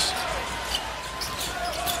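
Basketball being dribbled on a hardwood court, a few short sharp hits, over the steady noise of an arena crowd.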